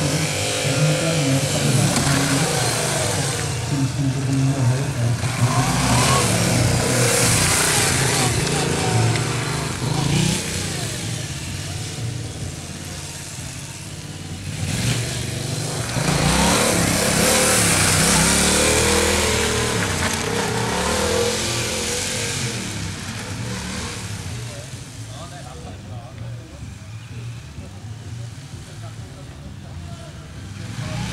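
A motorcycle engine revving up and down over and over as the bike accelerates and brakes through a tight cone slalom, its pitch rising and falling every second or two. It is loudest as the bike passes close and fades toward the end as it rides away.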